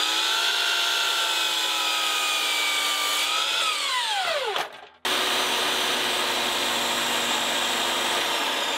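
A sliding miter saw motor spins up to a steady high whine while trimming a deck board, then winds down about four and a half seconds in. An abrupt change about five seconds in brings a steady, noisier run of a jobsite table saw ripping a thin strip off the edge of the deck board.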